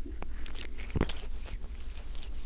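A cat's mouth sounds close to a binaural microphone: a run of small clicks and crunches, the sharpest about a second in, over a steady low rumble.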